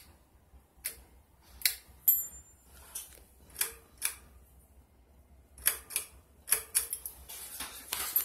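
Pull-chain switches on a Sears Roebuck/Emerson 1895 Series ceiling fan clicking as the chains are pulled, setting the fan and its lights. About a dozen sharp clicks come at uneven intervals, some in quick pairs, over a faint low hum.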